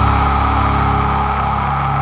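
Distorted electric guitars and bass holding a sustained final chord of a metal song, with a steady high note on top, slowly fading.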